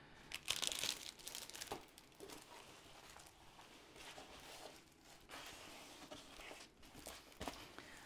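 Diamond painting canvas with its clear plastic cover film crinkling and rustling as it is handled and rolled, loudest briefly about half a second in.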